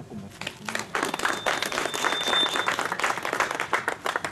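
Audience applauding after a speech, the clapping rising quickly within the first second and then going on densely. A thin, high, steady tone sounds briefly over it in the middle.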